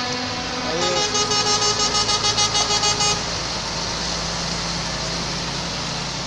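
Truck air horn sounding in rapid pulses, about five toots a second for a couple of seconds, as a greeting. Then the heavy truck's diesel engine rumbles steadily as it rolls close by.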